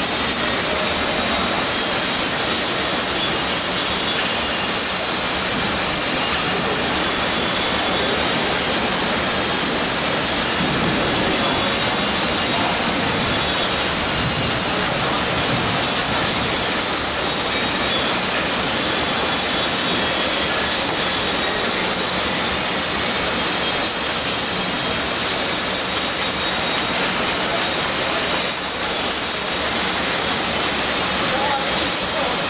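Loud, unchanging roar of foundry machinery with a strong high hiss and faint steady whine-like tones over it.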